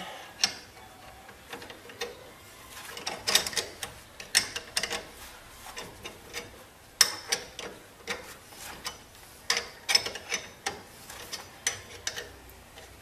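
Ratchet wrench clicking in short, irregular bursts, with a few sharper metal clinks, as bolts are undone on a steel front spindle.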